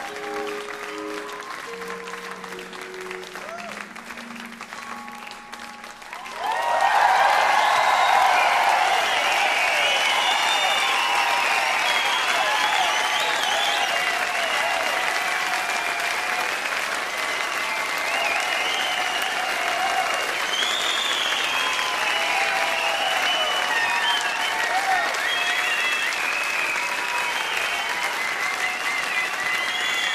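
A few soft, held instrument notes close the tune. About six seconds in, a concert audience breaks into loud, sustained applause and cheering.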